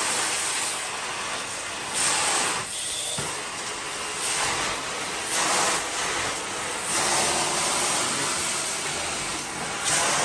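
Carpet-cleaning extraction wand drawn across wet carpet: a steady rushing hiss of suction and spray, swelling louder every couple of seconds.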